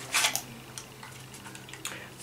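Soft handling sounds of a plastic foundation bottle and its packaging: a short rustle just after the start, then a few faint small clicks, over a faint steady low hum.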